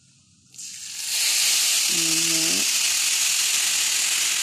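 Water poured into a hot frying pan of toasted vermicelli noodles, hitting the hot metal with a loud, steady sizzle and hiss of steam. The sizzle starts suddenly about half a second in and builds to full strength within about half a second more.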